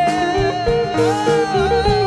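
Live jazz-pop ballad: a male singer holds one long high note that wavers in pitch a little past the middle, over grand piano and a low bass line.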